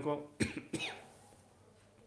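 A man gives two short coughs, clearing his throat, about a third of a second apart, within the first second.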